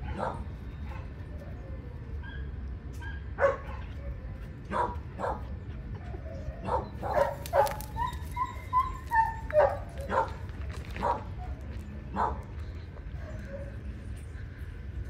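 Dogs tussling in rough play, giving short barks and yips in scattered bursts, thickest about halfway through, with a drawn-out wavering whine around eight to nine seconds in.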